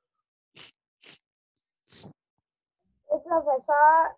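Near silence on a video call, broken by three faint, brief scratchy noises in the first two seconds, then a voice starts speaking about three seconds in.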